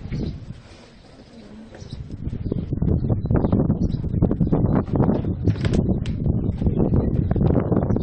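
Loud, irregular low rumbling and buffeting on the microphone, starting about two and a half seconds in and going on unevenly.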